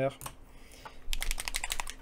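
A paint dropper bottle being shaken, its mixing ball rattling inside as a quick run of sharp clicks about a second in, lasting under a second.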